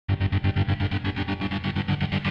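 Music: an electric guitar played through effects with distortion, in a fast, even pulsing rhythm of about eight beats a second that starts abruptly.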